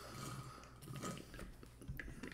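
Faint sipping and swallowing from an insulated drink tumbler, with a light click near the end.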